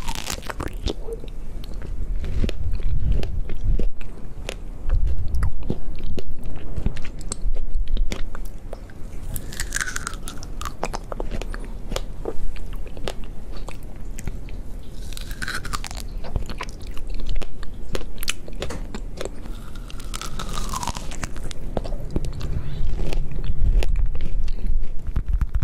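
Close-miked biting and chewing of fresh strawberries: soft, juicy bites and wet mouth clicks, picked up by a pair of ASMR microphones.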